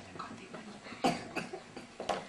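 Brief quiet in a room full of seated children and adults, broken by a couple of short coughs, the first about a second in and the second just after.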